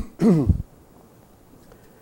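A man clearing his throat with two short rasps, over by about half a second in.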